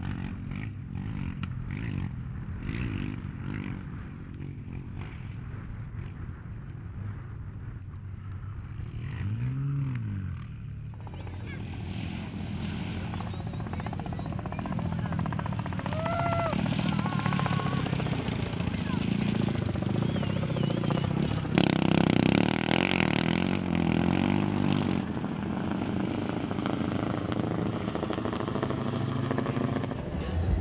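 Off-road racing motorcycle engines, heard across several edited shots. One bike passes about ten seconds in, its pitch rising and then falling. After that the engine sound is louder, with revving rises in pitch.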